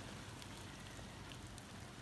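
Faint rustling with scattered light crackles as a hand scoops a handful of superworm larvae out of a tray of bran and egg carton.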